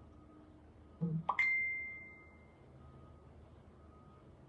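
A soft low bump, then a sharp click and a single clear high ding that rings out and fades over about a second, over faint room tone.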